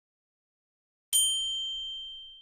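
Silence, then about a second in a single high, bright ding, a notification-bell sound effect, that rings out and slowly fades.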